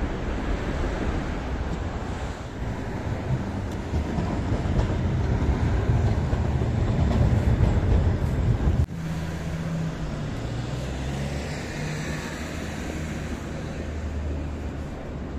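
Trams running on a city street: a low rumble that swells as a tram passes close by, then cuts off abruptly about two thirds of the way in. Another tram then moves off with a quieter rumble and stepped whining tones from its motors.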